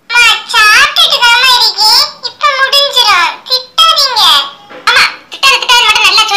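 Speech only: a high-pitched, child-like cartoon voice talking.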